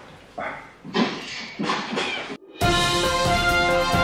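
A cat meowing three times in quick succession, then music starting abruptly about two and a half seconds in.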